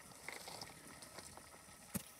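Faint trickle of a stream running into a cave entrance, with a single short click near the end.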